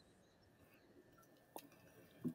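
Near silence: room tone, with one faint brief click a little past halfway.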